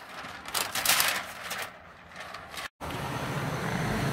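Plastic window-tint film crackling and rustling in uneven bursts as it is peeled off the glass and handled. About two and a half seconds in the sound stops short and a steady background hiss follows.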